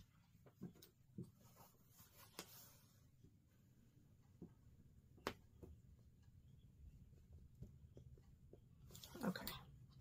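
Near silence with faint taps, clicks and rustles of quilted fabric being smoothed and pinned by hand, with a brief louder rustle near the end.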